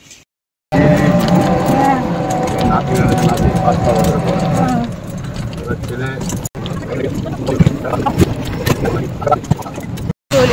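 Voices over street traffic noise heard from an open rickshaw in motion. The sound is broken by abrupt edit cuts: silence in the first moment, and a brief dropout a little past halfway.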